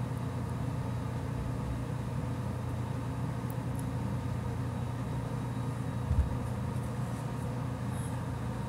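A steady low background hum, with a brief low thump about six seconds in.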